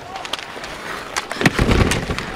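Hockey skates scraping and sticks clacking against the boards, with a heavy thud of a player hitting the boards and glass about a second and a half in.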